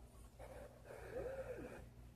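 Knife blade slicing through a paper index card: a faint papery hiss, with a soft breathy nasal sound about halfway through.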